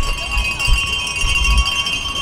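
Continuous metallic ringing and jingling of cowbells shaken by spectators, over low rumbling thumps of wind and handling on the microphone.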